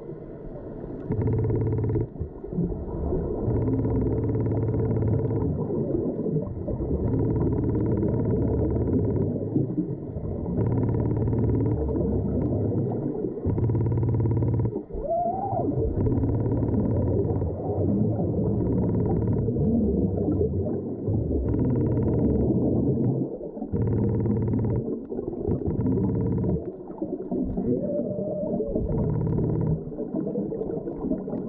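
A diver breathing underwater through a regulator fed by a surface air hose: breaths come every two to three seconds, each exhalation a gush of bubbles rumbling past the microphone, over a steady low rumble.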